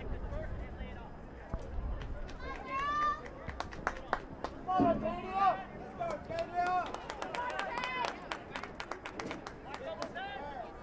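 Voices calling out across a sports field, short shouted calls rising and falling in pitch. They come thick from about a third of the way in, mixed with many sharp clicks or claps, over a low rumble in the first couple of seconds.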